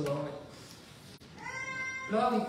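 A person's voice trails off, then about two-thirds of the way in a high, drawn-out vocal note rises and is held.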